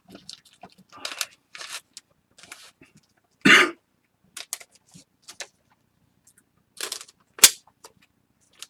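Foil-wrapped trading card packs and cards being handled on a table: short, scattered crinkles and clicks. A louder burst comes about three and a half seconds in and a sharp snap near the end.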